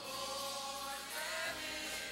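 Gospel choir singing, several voices holding sustained, gliding notes together.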